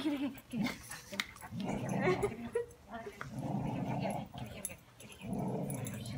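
Dogs growling in play, in several rough stretches of about a second each, with a woman laughing about two seconds in.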